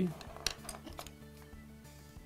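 Soft background music with steady sustained tones, with a few light clicks and clinks in the first second as multimeter probe tips and oven igniter leads are handled.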